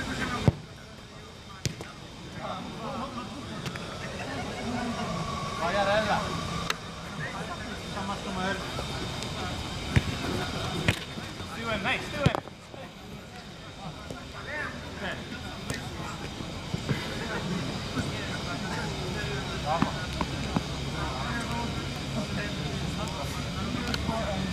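Football players shouting and calling to each other during play, with a few sharp thuds of the ball being kicked.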